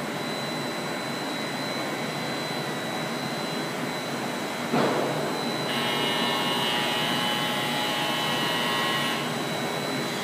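Polystar Model HA blown film extrusion line running steadily, a constant machine noise with a thin high whine. About halfway through comes a sudden knock, followed by a louder whining hiss with several steady tones that lasts about three and a half seconds and then stops.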